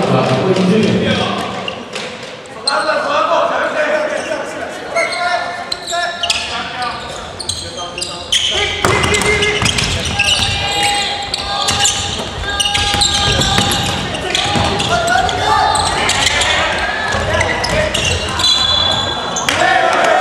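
Basketball game in a gymnasium: a ball bouncing on the wooden court, with players and bench shouting and calling out over the play.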